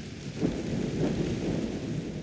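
Recorded thunderstorm sound effect: steady rain with low thunder, with a louder swell about half a second in.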